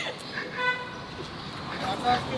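Electric scooter horn giving one short, single-pitched beep a little over half a second in.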